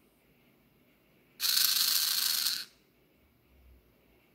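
A REV Robotics DC motor with gearbox spinning a wheel at half power for about a second under a timed autonomous program, a whirring gear whine that starts and cuts off abruptly. A faint low thump follows near the end.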